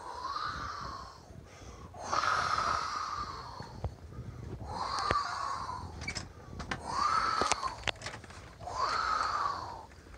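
A person breathing heavily near the microphone, about five long breaths roughly two seconds apart, with a few sharp clicks in the middle.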